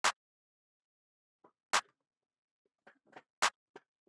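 A programmed trap drum one-shot, a short, sharp, clap-like hit, sounding three times about 1.7 seconds apart, once a bar. Fainter short clicks fall between the hits.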